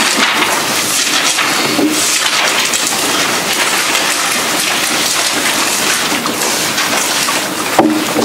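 Steady, loud rushing hiss with fine crackling throughout, with no speech over it.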